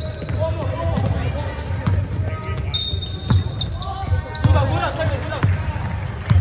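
A basketball bouncing on an indoor court floor: several irregularly spaced thuds, over the voices of players and spectators. A short, steady, high-pitched tone sounds about halfway through.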